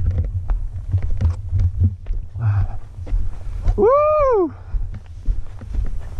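Dirt bike ridden over a rutted, muddy trail, heard from the rider's helmet camera: a heavy low rumble of engine and wind buffeting with scattered knocks and rattles from the rough ground. A rider shouts a rising-and-falling "Woo!" about four seconds in.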